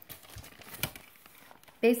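Paper notes rustling and crinkling as they are handled, with one sharper crinkle a little under a second in.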